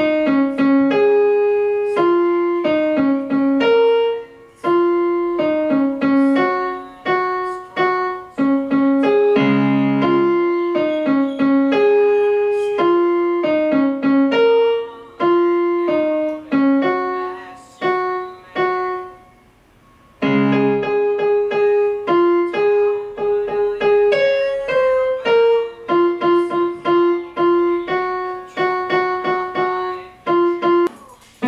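Electronic keyboard played with a piano voice: a melody of single notes with occasional low bass notes under it, pausing briefly a little past halfway and then going on.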